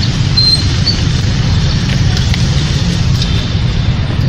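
Steady low rumble of motor-vehicle noise, with a few faint high tones over it.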